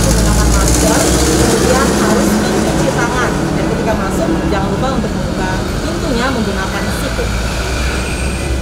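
A heavy vehicle's engine running close by with a low, steady rumble, amid street traffic.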